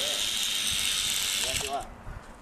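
Motors of an LS Quadcopter toy drone spinning its propellers while it is held in the hand: a steady high whir that stops suddenly near the end. One propeller is broken, and the owner finds the drone running weak.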